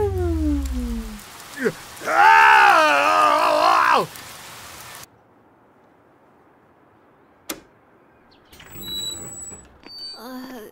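Animated-cartoon soundtrack: rain falling while a tone slides downward, then a drawn-out, wavering vocal cry from a character for about two seconds. The rain then cuts off to a quiet room, with a single sharp click a little past halfway and a short voice sound at the very end.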